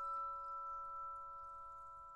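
Bowed vibraphone: several bars drawn with a string bow ring together as sustained, pure tones forming a chord, slowly fading.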